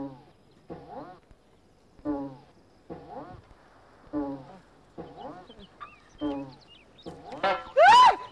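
Short bleat-like calls repeating about once a second, each a brief bending cry, then a louder, higher rising cry near the end.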